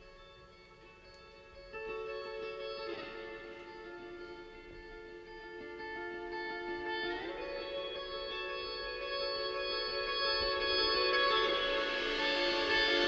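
Electric guitar picking slow, ringing chords that change every few seconds, growing steadily louder through the song's quiet opening.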